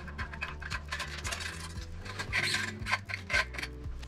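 Small metallic clicks and scraping from handling a steel guitar string at the tuning machine, over soft background music with a steady bass line.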